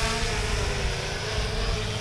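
3DR Solo quadcopter hovering, its four electric motors and propellers giving a steady buzzing hum that sinks slightly in pitch.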